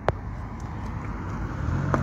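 Street traffic noise with a car engine running close by: a low steady hum that comes in and grows louder near the end. A single sharp tap sounds just after the start.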